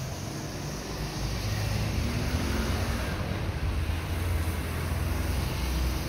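Street traffic noise from the road below, a steady wash of passing-car sound that grows louder about a second in.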